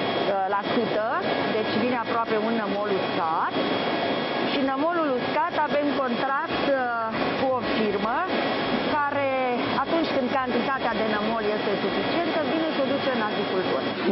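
People talking over a steady rushing background noise from the wastewater plant's churning treatment tanks, with a few faint steady tones in it.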